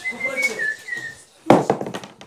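A person whistling a few short, high notes, followed about a second and a half in by a single loud thud.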